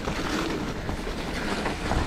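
Mountain bike descending fast over a rough, muddy forest trail: a steady rush of tyre and wind noise with rapid rattling and knocks as the bike jolts over the bumps.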